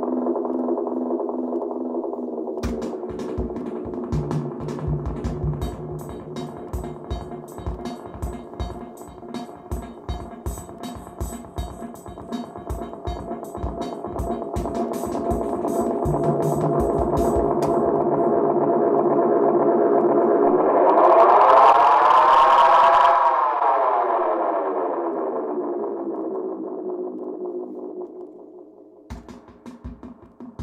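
Roland RE-201 Space Echo tape echo feeding back on itself into a sustained drone of several tones, with a Korg KR-55 drum machine pattern running through the echo as rapid repeating hits from about three seconds in. Around twenty seconds in the drone swells to its loudest and its pitch sweeps up and back down, the sound of the tape speed being changed, then it fades and the drum hits return right at the end.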